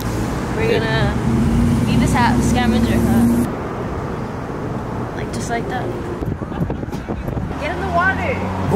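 Road traffic: cars running past on a street, with people's voices in the background.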